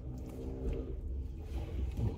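A man quietly chewing a bite of sandwich inside a parked car, over a steady low rumble.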